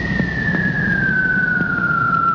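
A single high tone sliding slowly and steadily down in pitch, heard over a low rumbling noise. It is the sort of dramatic sound effect laid over an edited clip.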